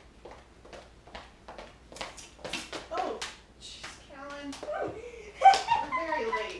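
Footsteps on a hardwood floor coming closer, about two to three steps a second and growing louder, followed by voices with a loud exclamation near the end.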